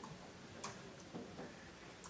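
Quiet room tone with a few faint, sharp clicks at uneven intervals; the clearest comes about two-thirds of a second in.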